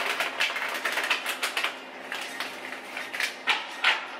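Tarot cards being shuffled and handled: a quick, uneven run of papery clicks and flicks, with a few louder snaps near the end.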